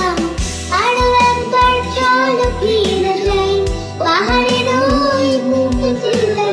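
A young girl singing a Bengali song in a high child's voice, holding long notes, over added instrumental backing with a steady low bass pulse.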